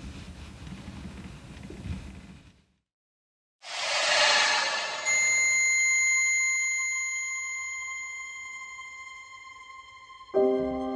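Bedding rustling and shifting for a couple of seconds, then a sudden cut to silence. A whoosh swells in, and a steady high-pitched ringing tone enters about five seconds in and slowly fades.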